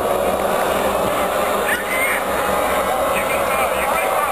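A large stadium crowd of football supporters calling and cheering, a steady dense mass of many voices with a few higher shouts standing out.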